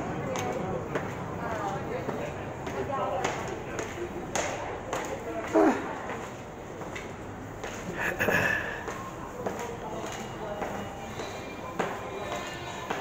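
Footsteps going slowly down the concrete stairs of a subway station entrance, with a few knocks, while voices sound in the background.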